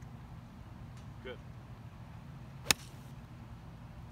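A golf iron striking a ball: one sharp crack about two and a half seconds in, over a steady low rumble.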